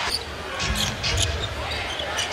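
A basketball dribbled on a hardwood court, a few bounces at about two a second, over the murmur of the arena crowd.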